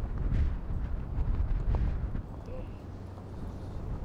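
Wind buffeting the microphone outdoors: a steady low rumble that eases a little in the second half.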